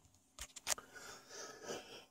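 Faint handling noise from a hand-held camera being moved: two light clicks about half a second in, then soft rubbing and scraping.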